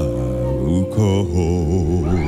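Live gospel band music with men singing: held notes over the band, and from about halfway a man's voice holding a note with a wide vibrato.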